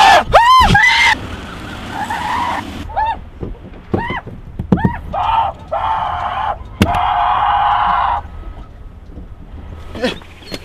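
A man screaming in panic: high, wavering shrieks in the first second, then a run of long, hoarse screams. There is a sharp knock a little before the last one.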